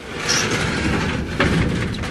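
Steel garden shed sliding door running along its top rail on plastic slides: a steady scraping rumble as it slides across, with a click about one and a half seconds in.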